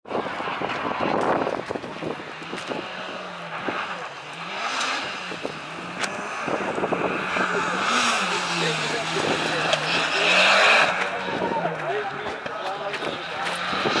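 Mitsubishi Lancer Evolution X's turbocharged four-cylinder engine revving up and falling back again and again as the car is driven hard through tight turns. Tyres squeal briefly around ten seconds in.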